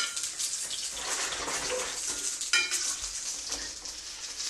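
Trout fillets searing skin-side down in hot oil in a skillet, a steady sizzle, while a spoon stirs a saucepan of cauliflower in cream and knocks against the pan with a sharp click about two and a half seconds in.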